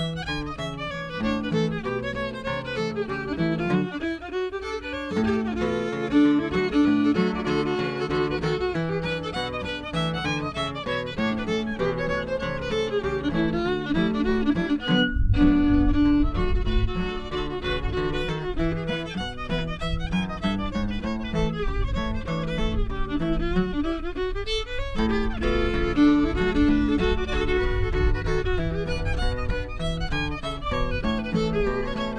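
A fiddle tune played on fiddle with acoustic guitar accompaniment. About halfway through there is a momentary dropout, and from then on a low rumble of wind on the microphone runs under the music.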